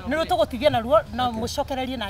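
Speech: a person talking, over a steady low hum.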